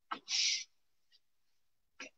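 A whiteboard duster wiped across a whiteboard: one quick rubbing stroke about half a second in, with a short knock of the duster just before it.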